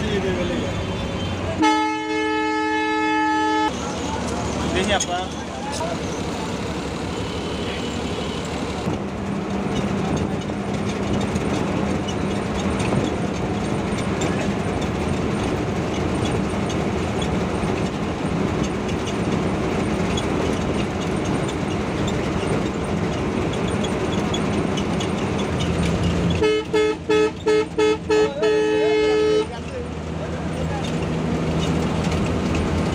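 Bus horn sounding a long, multi-toned blast about two seconds in, then a run of quick repeated toots near the end, over the steady running of the bus engine and road noise.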